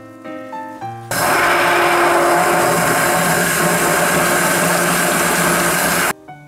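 Immersion blender running with its blade head down in egg batter, mixing in flour. It starts abruptly about a second in, runs steadily and loudly, and cuts off sharply near the end.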